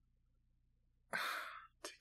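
Near silence for about a second, then a man's short, breathy exhale like a sigh, lasting about half a second.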